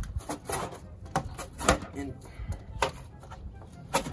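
A cardboard box being cut with a knife and handled: scattered sharp scrapes and knocks of the blade and flexing cardboard, several in a few seconds.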